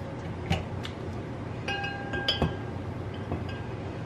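A brief light clink that rings with a short high tone about two seconds in, among a few soft clicks.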